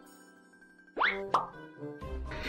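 Cartoon-style sound effects: a held pitched tone, then two quick upward-sweeping pops about a second in, a third of a second apart.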